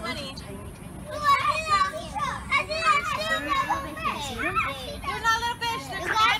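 Children's voices: children talking and calling out.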